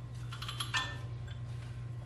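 Faint metallic clicks and scraping as a shock absorber is pulled out of a coil spring held in a strut spring compressor, over a steady low hum. The clicks fall in the first second.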